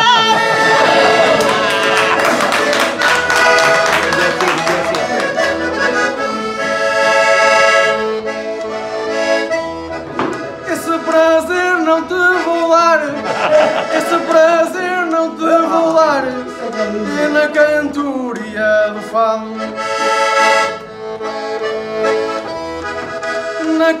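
Portuguese concertina (diatonic button accordion) playing an instrumental interlude of a traditional desgarrada tune: a running melody over bass chords pulsing in a steady beat. A singing voice comes in at the very end.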